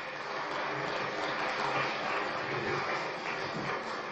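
Audience applauding, steady throughout.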